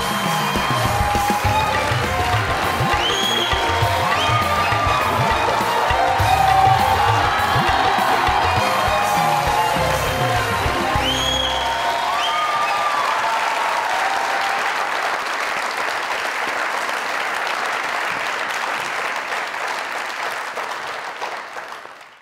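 Upbeat entrance music over studio-audience applause. About halfway through, the music's beat drops out, leaving the applause, which fades away near the end.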